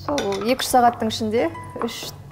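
Clinking of cutlery and dishes at a kitchen counter, with a voice and background music over it.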